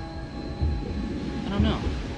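Film trailer sound design: sustained droning tones over irregular low rumbling hits, with a brief voice-like cry near the end.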